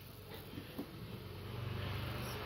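Faint rustling of cloth and handling noise as a phone is moved close over a heap of fabric, growing a little louder near the end.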